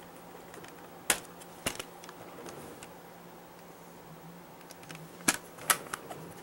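Plastic CD jewel cases clacking as they are handled: two sharp clicks a little over a second in and two more near the end.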